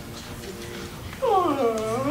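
A person's drawn-out, whiny vocal moan starting about a second in, its pitch sliding down and then back up: an exaggerated show of boredom during chanting.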